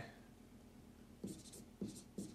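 Dry-erase marker scratching on a whiteboard in short strokes, starting a little after halfway through; before that, quiet room tone.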